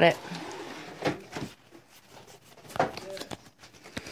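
Pokémon trading cards handled and flipped through by hand: faint light ticks and rustles of card stock, with a couple of brief low voices.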